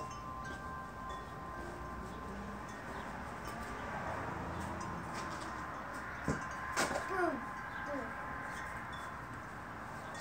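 Faint, steady ringing tones over a background hiss, with a sharp knock about six seconds in and a second, broader thud just before seven seconds.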